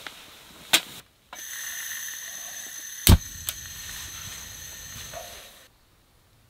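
A metal kettle clacks down onto a canister camping stove. The stove's gas then hisses steadily with a faint whistle. About three seconds in comes a sharp click with a low thump as the burner lights, and the hiss runs on with a low flame rumble until it stops abruptly shortly before the end.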